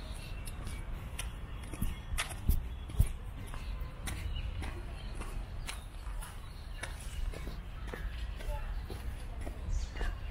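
Footsteps and small handling clicks from a walking camera over a low wind rumble on the microphone, with faint distant voices. Two sharper knocks come about two and a half and three seconds in.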